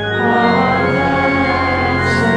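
Church organ playing sustained chords, moving to a new chord just as the sound begins.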